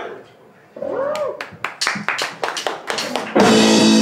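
Live rock band starting a song: a short up-and-down gliding tone and a run of scattered sharp drum hits, then about three and a half seconds in the electric guitar, bass and drum kit come in together, loud.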